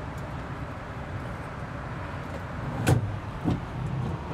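Sprinter van front seat's swivel mechanism being worked by hand: one sharp click about three seconds in and a lighter tap just after, over low steady background noise.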